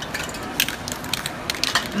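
Aerosol spray paint can hissing in short, uneven bursts as black paint is sprayed onto glossy poster board, mixed with crackling clicks of the can and hands being handled.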